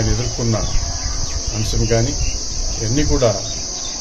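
A steady, high-pitched insect chorus, typical of crickets, runs throughout, with a man's voice speaking in short, halting phrases in Telugu over it.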